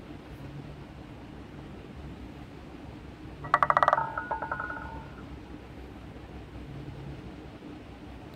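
Roulette ball rattling across the wheel's frets and pockets: a quick run of loud rapid clicks about three and a half seconds in, with ringing that fades out a second later, over a steady low hum.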